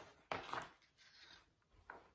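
Faint rustle of a large picture book's paper page being turned over: a brief swish about a third of a second in, then softer paper and handling sounds, with a small tap near the end.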